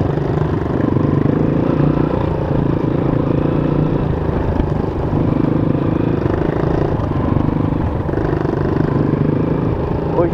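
Honda CRF230 dirt bike's single-cylinder four-stroke engine running at low speed while riding, its note swelling and easing every second or two as the throttle is opened and backed off.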